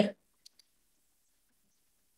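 Two faint, short clicks close together about half a second in: a stylus tapping a tablet screen while handwriting. Otherwise near silence.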